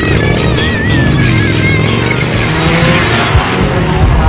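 Motorcycle engine running loudly as the bike pulls away, over background music.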